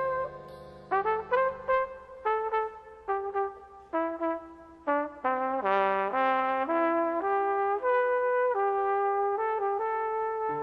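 A brass horn of the trumpet family playing a jazz melody: a held note fades out in the first second, then a string of short separate notes, then longer held notes from about halfway.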